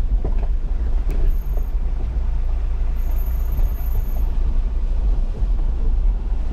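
A car driving slowly over a rough dirt bush track, heard from inside the cabin: a steady low rumble of engine and tyres, with a few light knocks and rattles from the bumpy ground.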